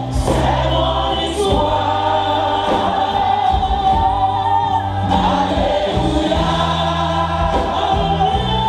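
Live gospel worship music: a woman singing lead into a microphone over band accompaniment, with sustained bass notes and drum hits roughly once a second, amplified through the church PA.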